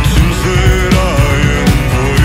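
A rock song played by a full band: a drum kit fitted with Evans Calftone '56 heads keeps a steady beat under bass, guitars and a melody line that glides in pitch.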